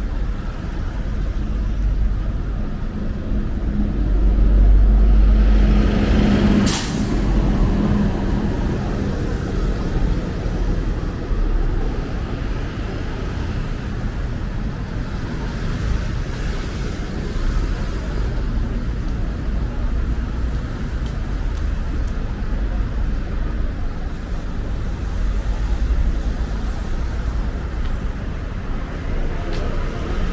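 City street traffic at night. A heavy vehicle passes, loudest about five seconds in, and gives one brief, sharp air-brake hiss about seven seconds in. After that, steady traffic noise goes on.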